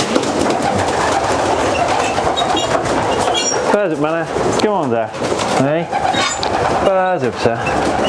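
Young racing pigeons cooing in a loft: several drawn-out, bending coos in the second half, over a steady background hiss.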